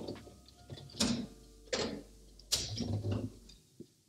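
Someone rummaging in a freezer to take out a chilled champagne flute: about four sharp knocks and clatters between one and three seconds in, with sliding and handling noise around them.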